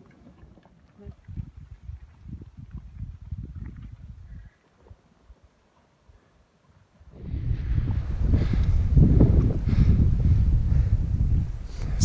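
Wind buffeting the camera microphone: uneven gusts for the first few seconds, a brief near-silent gap, then a much louder, heavier rush from about seven seconds in.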